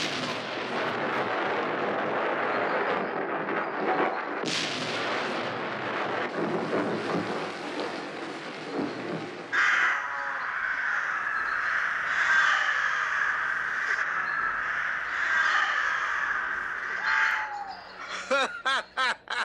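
A loud rushing noise with a surge about four and a half seconds in, giving way about halfway through to a large flock of crows cawing all together, which stops shortly before the end.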